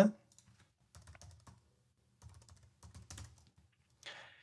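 Faint computer keyboard typing in three short bursts of keystrokes.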